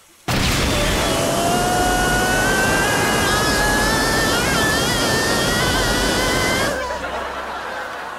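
A sudden loud blast of fire, a rocket-exhaust sound effect: a dense roar that starts about a quarter second in, with a slowly rising whistling tone over it. It cuts off abruptly near the end.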